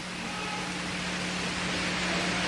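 Steady hiss with a low electrical hum: the background noise of the lecture recording, slowly growing louder.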